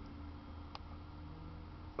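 A single faint click of a computer mouse about three-quarters of a second in, over a low steady hum.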